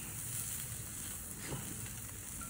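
Ribeye steaks and cauliflower steaks sizzling faintly and steadily on a hot charcoal kettle grill.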